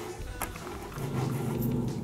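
A dog making a low, drawn-out sound for about a second in the second half, over light background music.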